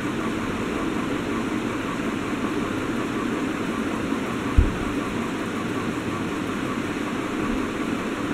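Steady background hiss of room noise, with a single low thump a little past halfway.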